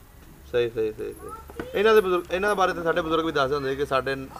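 An elderly man's voice speaking in long, drawn-out, sing-song phrases, with a bird calling in the background.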